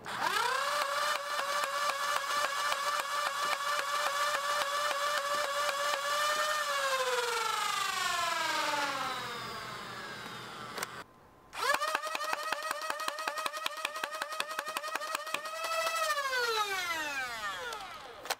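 A Nerf Stryfe's flywheel cage with Out of Darts Valkyrie 3S motors and 43 mm Bulldog wheels spinning up to a steady high whine, with a fast train of clicks over it, then winding down in a falling glide. This happens twice, with a second spin-up about a second after the first has wound down.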